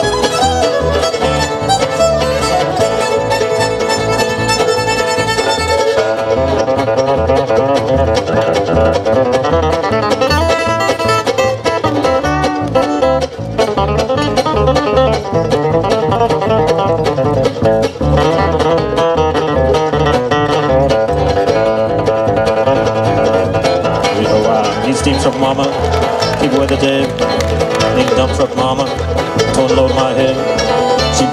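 Bluegrass band playing an instrumental break on fiddle, mandolin, acoustic guitars and upright bass; the fiddle leads at first and drops back about six seconds in, leaving mandolin and guitars over the bass.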